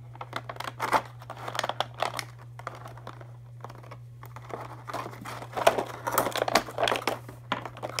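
Thin plastic blister packaging crinkling and crackling irregularly as small toy horse figures and accessories are popped out of it, busier in the second half, over a steady low hum.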